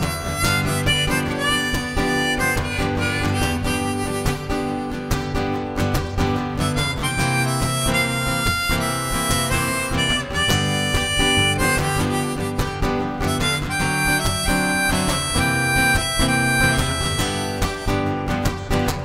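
Harmonica in a neck rack playing a solo of held and bending notes over strummed acoustic guitar, the instrumental break between verses of a blues song.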